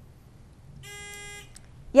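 Quiz bowl lockout buzzer giving one steady electronic buzz, a bit over half a second long, about a second in: a player has buzzed in to answer.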